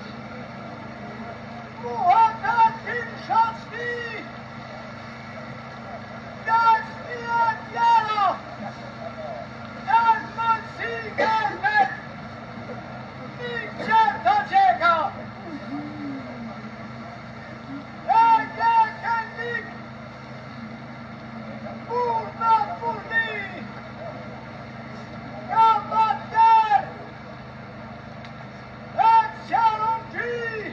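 A man's Albanian funeral lament (vajtim): one high voice wailing short, sliding phrases of a second or two, about every four seconds, with pauses between. A steady low hum runs underneath.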